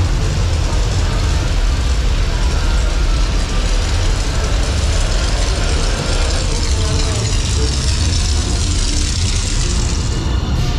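Steady, loud low rumble with a hiss over it from the dark ride's burning-city show scene, where gas flame effects fire overhead and beside the boat.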